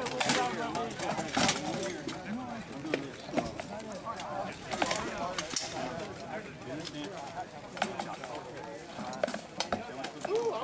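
People talking indistinctly close by, with sharp knocks now and then from rattan swords striking shields and armour during sword-and-shield sparring.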